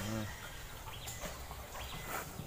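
Domestic chickens clucking faintly in the background, a few short calls, after a brief bit of a man's voice at the start.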